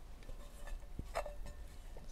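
Quiet kitchen room tone with a steady low hum, a soft knock about a second in and a brief faint clink just after it.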